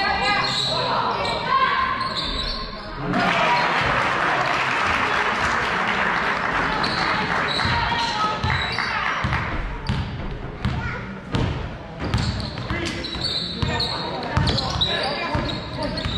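Gym crowd noise at a youth basketball game: many voices of spectators shouting, with a swell of cheering from about three seconds in that lasts several seconds. Basketball bounces on the hardwood court come through in the second half.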